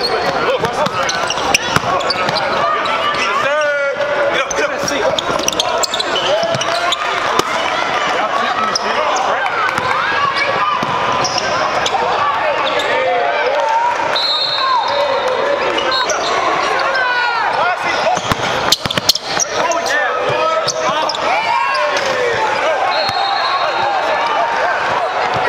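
Live gym sound of a basketball game: players and spectators calling and talking over one another, the ball bouncing on the hardwood, and sneakers briefly squeaking on the court.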